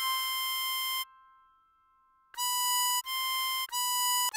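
Diatonic harmonica playing single high notes on hole 7: a held blow note (C6) of about a second, a short lull, then draw B5, blow C6 and draw B5 in quick succession, each note cleanly separated.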